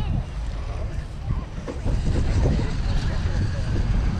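Wind buffeting the microphone, a heavy low rumble throughout, with faint voices in the background.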